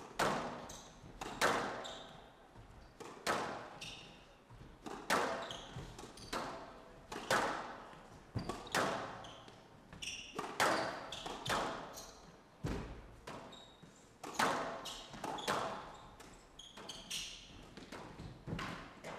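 Squash ball struck by rackets and smacking off the front wall and glass side walls through a long rally: sharp hits about once a second, some in quick pairs, each ringing out with echo in a large hall.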